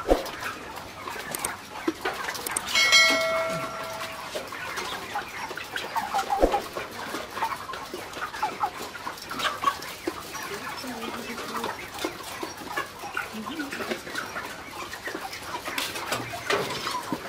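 A large flock of Ross 308 broiler chickens clucking, many short calls overlapping throughout, with one longer held call about three seconds in.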